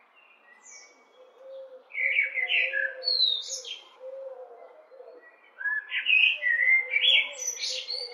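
Common blackbird singing: two warbled song phrases, one about two seconds in and a longer one from about halfway to the end, the second finishing in higher, thinner notes.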